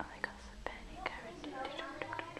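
Low, whispered talk between people, broken by a few sharp clicks.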